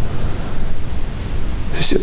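A steady hiss of background noise in a pause between a man's sentences, with his voice coming back in on a hissing consonant near the end.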